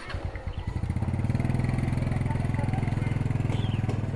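A small motorcycle's engine running as the bike pulls away and rides past close by: a steady, low, pulsing engine note that grows louder over the first second and then holds.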